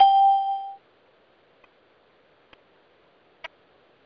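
Conference-call bridge chime: a single electronic tone, just under a second long and fading out, the signal that a caller has hung up. A few faint clicks follow on the phone line.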